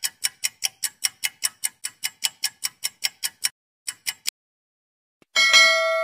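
Countdown-timer clock ticking, about five quick ticks a second, which stops about three and a half seconds in; a few more ticks follow near four seconds. About five seconds in comes a chime that rings out and fades, marking the end of the countdown.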